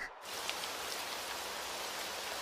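Steady rain falling, an even hiss that comes in a moment after the start and holds level.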